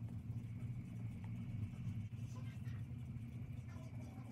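A steady low hum of background room noise.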